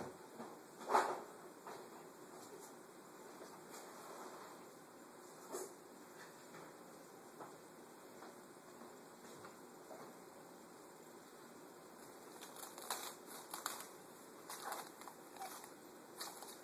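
Quiet room noise with a few isolated faint clicks, then a run of light rustling and clicking in the last few seconds as cellophane is handled over the vase.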